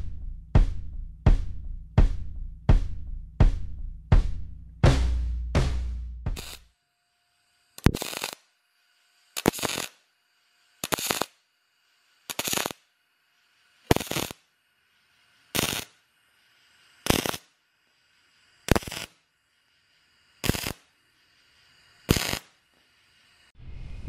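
Music with a steady drum beat for about six seconds. Then comes a MIG brazing arc with silicon bronze wire from a Fronius TransSteel 2200, firing in short timed stitch bursts: about ten, each roughly half a second long and about a second and a half apart, with silence between.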